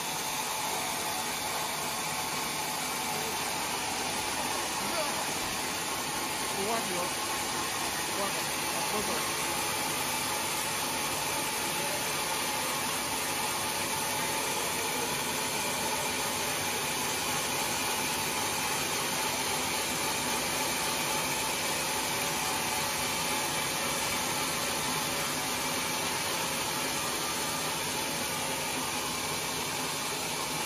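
Band sawmill running, its blade ripping lengthwise through a large log as the carriage carries the log past; a steady, even noise.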